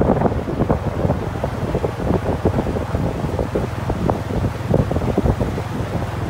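Wind buffeting the microphone of a moving motorbike, over the low steady hum of its engine, with a dense run of irregular knocks and clatter.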